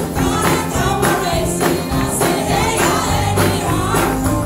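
Live country band: several women singing together at microphones over electric guitars and keyboards, with a steady beat.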